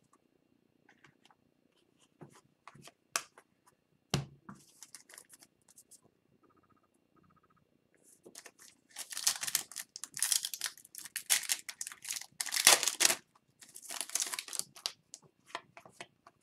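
Light clicks and taps of trading cards being handled, then several seconds of dense crackling as an Upper Deck hockey card pack's foil wrapper is crinkled and torn open, with a short break before the last of it.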